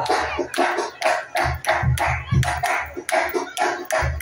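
Rhythmic hand clapping, sharp claps about three to four a second, with a low drum beat underneath.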